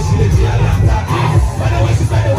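Loud music with a heavy bass beat, over a large crowd of students shouting and singing along.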